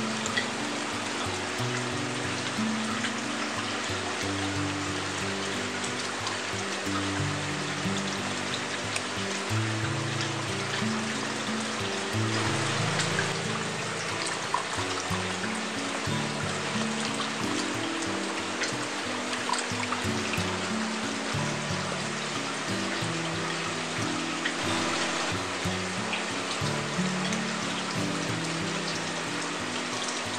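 Background music with a slow melody of low notes, over a steady trickle of water running from an aquarium water-splitter manifold onto the rockwork.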